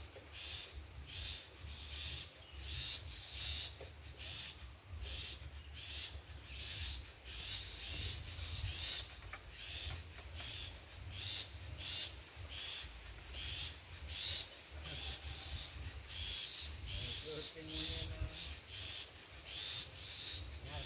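Long-tailed shrike (cendet) calling in the wild: short, harsh notes repeated about twice a second.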